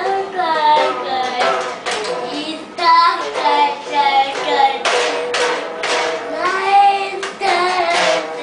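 A toddler singing loudly in a high, wavering voice in short phrases, with sharp strums on a toy guitar between them.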